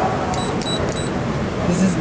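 Three short, high electronic beeps from a Schindler elevator hall call button as it is pressed, over a background murmur of voices.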